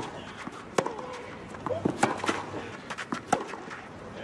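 Tennis ball struck by rackets in a rally on a clay court, sharp hits about every second and a bit, with fainter bounces and footfalls between.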